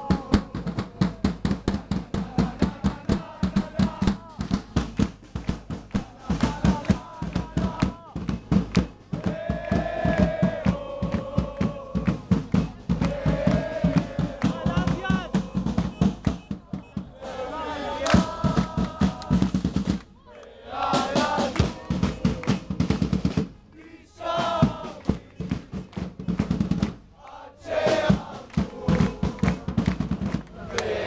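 A large crowd of fans chanting together in unison to a fast, steady beat of about four strokes a second from a drum and hand-clapping. The beat drops out briefly a few times in the second half, leaving the chanting voices.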